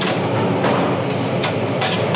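Steady, loud mechanical running noise with a low hum underneath. A few light clicks and knocks come as a sheet-metal control panel and its wires are handled.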